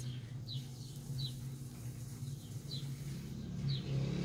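A small bird chirping faintly: short single high notes, each falling slightly in pitch, about one a second, over a low steady hum.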